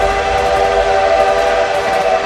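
Train whistle sound effect: a chord of several steady tones sounding together and held, over a low rumble.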